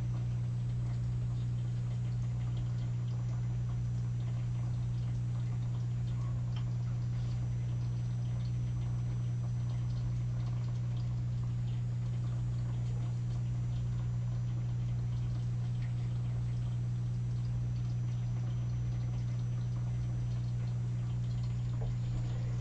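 A steady low electrical hum, with faint scattered ticks and scratches of an alcohol marker's tip being flicked across paper.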